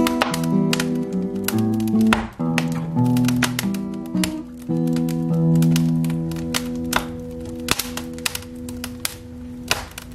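Classical guitar playing the final bars of a Spanish waltz, ending about halfway through on a chord left to ring and fade for about five seconds. Sharp pops and crackles of a burning wood fire are scattered throughout.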